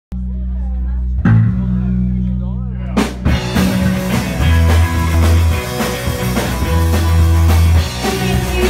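Live rock band of drums, electric guitar and bass: held low notes with a couple of crashes, then the full band comes in with driving drums about three and a half seconds in.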